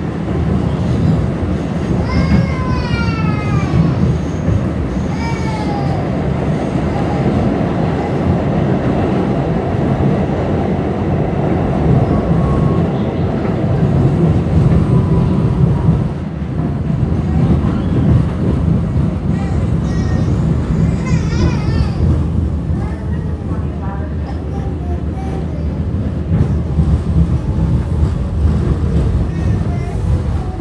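New York City subway train running through a tunnel, heard from inside the car: a loud, steady low rumble of wheels on rails.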